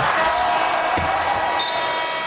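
Arena horn sounding a steady, held tone as the game clock runs out at the end of the half, over crowd noise, with a thump about a second in.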